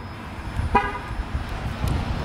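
Jeep Wrangler 392 horn giving a single short chirp about three-quarters of a second in, over a low outdoor rumble.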